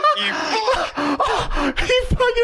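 Men laughing hard, with gasping breaths between bursts of laughter.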